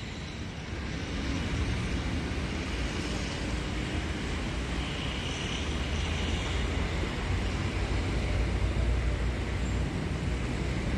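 Urban street ambience: a steady wash of road traffic noise with a low rumble that grows a little louder after the first second.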